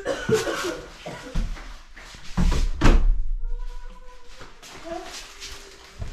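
A front door being pulled shut, closing with a thud about three seconds in.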